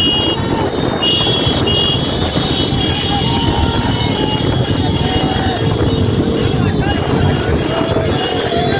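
Motorcycle engines running and wind noise on a moving microphone, with men shouting over it.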